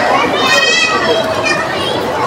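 Background chatter of diners, with a child's high-pitched, wavering call lasting about half a second near the start.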